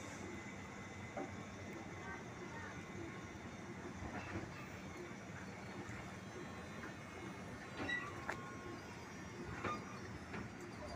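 KRL electric commuter train rolling slowly along waterlogged track: a steady low running noise with a few sharp clicks and knocks from the wheels and running gear.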